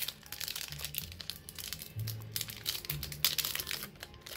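Foil Pokémon booster pack wrapper crinkling and crackling in the hands as it is torn open, in many short, irregular crackles.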